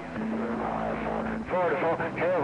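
CB radio receiver hiss with a steady low tone, then another station's voice comes in over the radio about one and a half seconds in, pinning the signal meter at S9.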